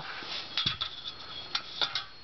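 Bottom rail of a Hunter Douglas honeycomb blind being slid off, a part scraping along the rail with a few small clicks: one about half a second in and two near the end.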